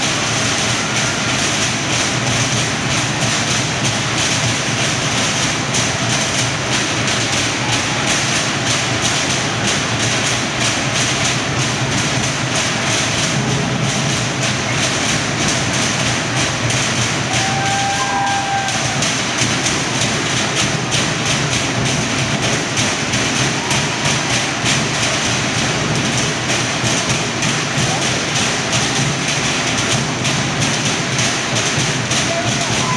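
Fast, continuous drumming on wooden log drums, a steady rapid rattle of strikes with no breaks, accompanying a Samoan fire knife dance.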